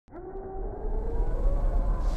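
Horror logo sting opening: a deep rumble swells up from silence under several eerie, sustained tones that slowly rise in pitch.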